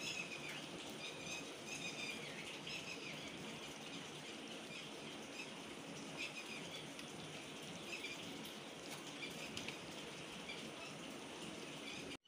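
Faint bird chirps scattered over a low, steady background hiss.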